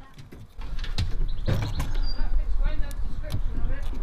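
Scattered light clicks and knocks of metal parts being handled as an electromagnetic motor brake is seated on a mobility scooter's motor and its screws are lined up with the mounting holes, over a low rumble that starts about half a second in.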